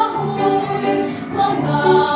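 Children's choir singing in several parts, voices holding notes together in harmony and moving to new chords about every half second.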